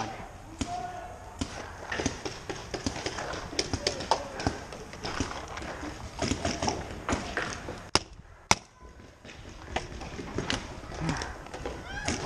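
Paintball markers popping irregularly across the field, with faint voices in the background; two sharp snaps stand out about eight seconds in.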